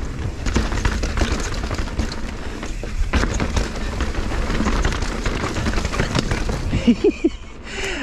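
Mountain bike riding fast down a rocky, rooty trail: knobby tyres rolling and clattering over rocks and roots with the bike rattling, over a low rumble. The rider laughs briefly near the end.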